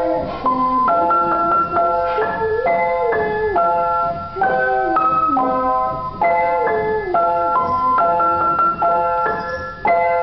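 Piano playing a simple children's song in chords, a new chord about every half second.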